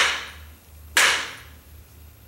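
Two polymer training blades striking each other hard, twice, about a second apart, each hit a sharp clack with a short ringing tail. The hits are a durability test, with repeated striking on one spot of a half-inch HDPE training blade.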